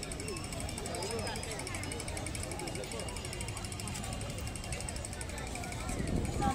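Voices of people talking around an open-air park, not close enough to make out words, over a steady low rumble. A faint, rapid, even buzz sits high above them.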